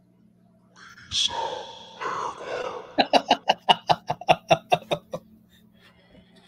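A phone video played back through the phone's small speaker held to a microphone, over a steady hum: a muffled voice about a second in, then a quick run of about a dozen sharp pulses, roughly five a second, that stops about a second before the end.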